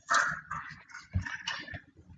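A car tyre crushing plastic toothpaste tubes, which burst and squirt out toothpaste in several irregular squelching spurts, with a low thump just over a second in.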